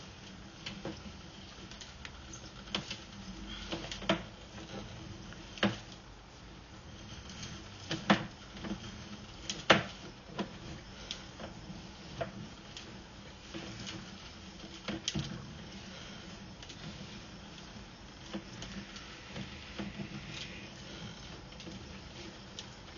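Sewer inspection camera's push cable being pulled back through the pipe: irregular clicks and knocks, a few of them sharp, over a steady low hum.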